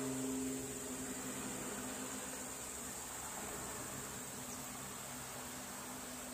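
Faint steady outdoor ambience: a high insect drone over a soft hiss, with the last guitar notes of the music dying away in the first second.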